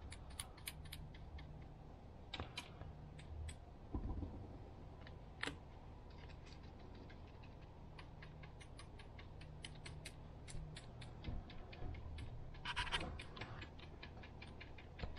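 Small paintbrush dabbing paint through a stencil onto a weathered driftwood plank: faint, irregular taps and scratches, several a second, with a louder flurry near the end, over a steady low hum.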